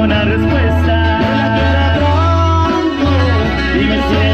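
Dance band music in an instrumental stretch between sung verses: a guitar melody over a steady, stepping bass line.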